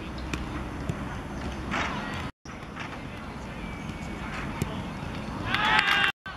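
A penalty kick on an artificial-turf pitch: the ball is struck with a sharp thud, then players break into loud shouting and cheering as it goes in.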